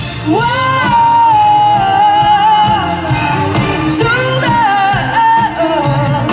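A rock band playing live with a singer who climbs to a long held high note and then starts a new phrase, over drums, bass and electric guitar.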